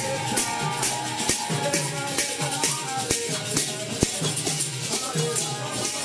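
Harinama street kirtan: karatalas (small hand cymbals) clashing in a steady beat about twice a second over a hand drum and chanting voices.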